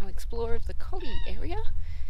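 A woman's voice, wordless or unclear, its pitch sliding up and down in a sing-song, meow-like way, over a steady low rumble.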